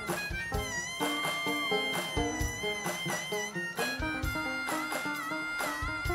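Live band playing an instrumental passage: a harmonica solo of long held notes that bend slightly, over a steady drum beat.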